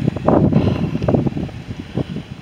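Wind buffeting the microphone, an uneven gusty rumble.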